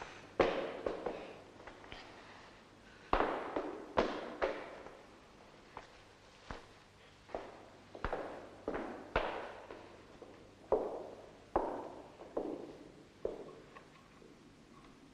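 A series of about fifteen sharp cracks or blows at an uneven pace, some in quick pairs, each ringing out briefly in an echoing room.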